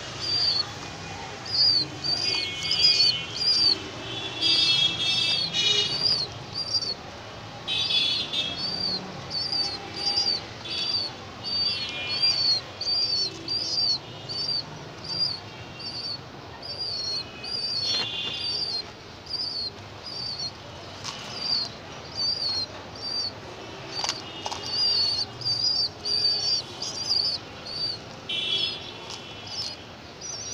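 A bird chirping over and over, one short high chirp about every two-thirds of a second, with other birds' calls coming and going around it.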